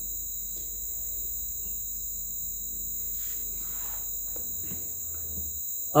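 Steady high-pitched insect chirring, with a low hum beneath it that fades shortly before the end.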